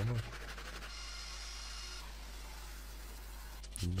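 Quiet scratchy scrubbing of a small detailing brush worked over a foamed, dirty alloy wheel rim.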